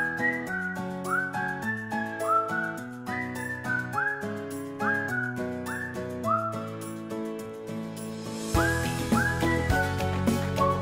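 Cheerful background music: a whistled melody, each note sliding up into pitch, over a chordal accompaniment and a steady beat.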